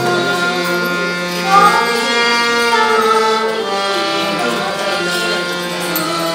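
Devotional song: a singing voice gliding up and down over steady, held accompaniment notes.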